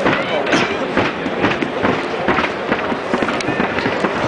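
Steady crowd chatter in a football stand, with many clicks and knocks from the camera being handled.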